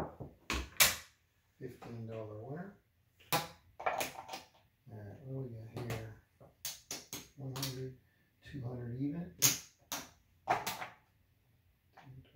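Casino chips clacking together as they are picked from the rail and stacked, with about a dozen sharp clicks scattered through.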